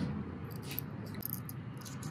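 Faint light ticks and scraping of small metal parts: an industrial sewing machine's thread tension assembly, its take-up spring and basket being turned together between the fingers to seat the spring's pin. Low room noise runs underneath.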